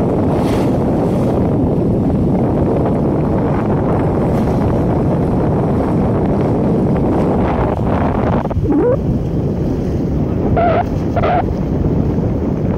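Strong wind buffeting the microphone, with sea water washing against the ship's hull, a steady heavy rush throughout. Near the end a few short pitched calls cut through: one rising, then two brief ones.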